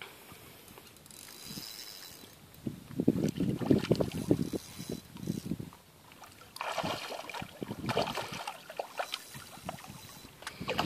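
A hooked grey mullet thrashing at the water's surface, making irregular bursts of splashing. The splashing is loudest from about three to five and a half seconds in, with a second spell around seven to nine seconds.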